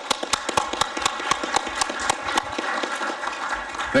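Applause from the audience and panel: many hands clapping in a dense, steady patter.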